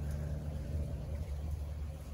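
A steady low hum and rumble, like a distant motor or traffic, with no clear events.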